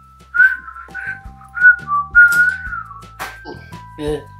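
A woman whistling a short tune through pursed lips: about five wavering notes, the last held longest.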